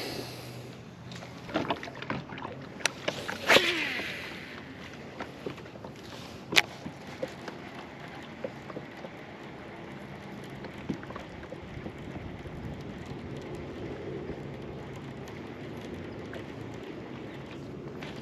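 A cast and retrieve with a baitcasting rod and reel, heard over steady wind and water noise. A few sharp clicks and knocks of tackle come in the first seven seconds, the largest a short burst with a falling sweep about three and a half seconds in.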